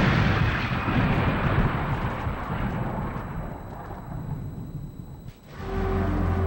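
The long decaying rumble of a loud explosion-like boom sound effect, fading out over about five seconds. Low sustained music begins near the end.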